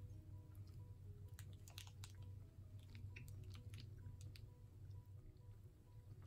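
Faint chewing of a bite of white-chocolate snack, with scattered soft clicks of the mouth.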